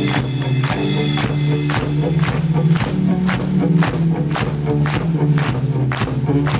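Live rock band playing through a venue PA, with electric bass holding strong low notes under a steady beat of percussive hits about twice a second.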